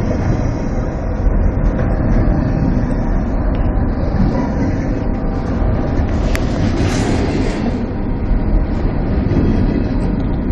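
Double-stack container cars of a freight train rolling past at close range: a steady, loud rumble of steel wheels on the rails, with a brief higher hiss about six and a half seconds in.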